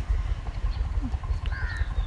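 Outdoor pause with a steady low rumble of wind on the microphone. A faint, brief bird call comes about three-quarters of the way through.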